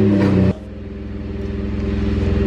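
Chevrolet Colorado's 2.8 L Duramax diesel engine running at idle. The note drops and eases about half a second in, then settles into an even, pulsing idle that slowly grows louder.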